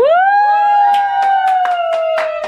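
A young woman's long, loud whoop that swoops sharply up in pitch at the start and is then held for over two seconds, sagging slightly, as she is lifted up. People clap along from about a second in.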